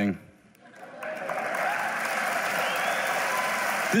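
Large audience applauding with laughter, swelling in about a second in and then holding steady.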